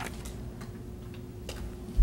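Quiet room tone: a steady low electrical hum with a faint steady tone, and a few faint, irregular clicks.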